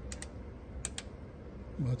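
Four sharp clicks in two quick pairs, a bit under a second apart, from the front-panel switches of a Teac V-8030S cassette deck being flipped, over a low steady hum. A man's voice comes in near the end.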